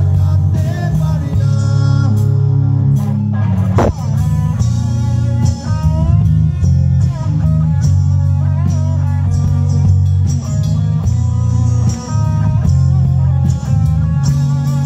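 Live rock band playing: an electric guitar lead line with bent notes over a heavy bass guitar and drums.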